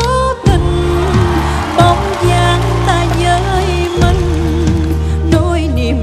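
Stage band playing a bolero-style instrumental passage: sustained bass notes that shift every second or so under a wavering melody line.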